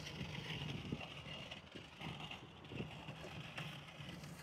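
Faint steady whir with a thin high hum from a parked Waymo robotaxi's spinning roof sensors, over low outdoor background noise.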